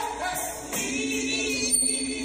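Gospel choir singing held notes with a live church band, with repeated cymbal strikes on top.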